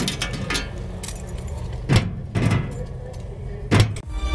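Metal locker being handled: rattling and a series of sharp metallic clicks and knocks, the loudest about two seconds in and again just before the end, when the locker door shuts.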